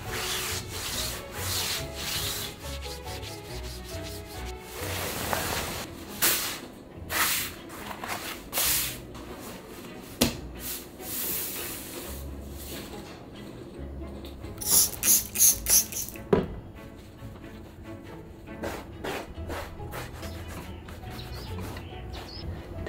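Fabric rubbing and swishing as a microfiber cloth is wiped over a cloth tablecloth and the tablecloth is handled and folded. A quick run of about five brisk swishes comes near the two-thirds mark.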